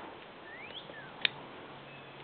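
A single sharp click about a second in, from the climbing gear as the upper rope ascender is pushed up the rope, preceded by a couple of faint bird chirps.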